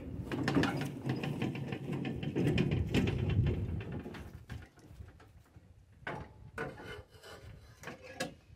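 Plastic tow-behind dump cart rolled over rough ground, its body and steel tow bar rattling for about four and a half seconds; then a few separate metal clicks and knocks as the tow bar is set onto the riding mower's hitch.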